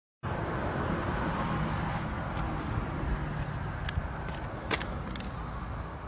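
Steady outdoor background rumble, with a few faint sharp clicks in the second half, the clearest nearly five seconds in.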